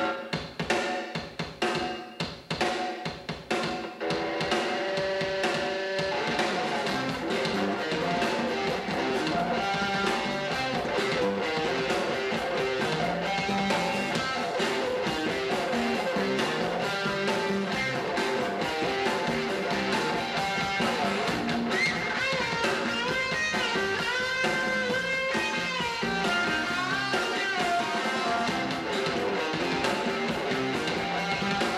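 Live rock band playing: electric guitars and drum kit. It opens with a few separate sharp hits over the first few seconds, then the full band settles into a steady groove, and about two-thirds of the way through a lead line with bending, wavering notes comes in over it.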